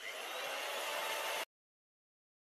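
Chainsaw sound effect: a steady buzzing, whirring noise that runs for about a second and a half, then cuts off abruptly.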